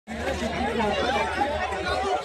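Crowd chatter: many people talking at once in overlapping voices, no single voice standing out.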